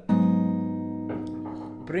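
Acoustic guitar sounding an A-flat minor 7 chord (G#m7) at the fourth fret, its low E, D, G and B strings plucked together once with thumb and fingers. The chord rings on and slowly fades.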